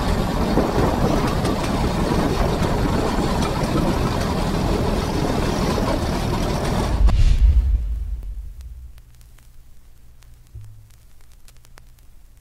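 Allis-Chalmers 170 tractor running steadily while working a PTO-driven weed badger through tall weeds. About seven seconds in there is a loud low thump, after which the sound falls away to a faint low hum with scattered clicks.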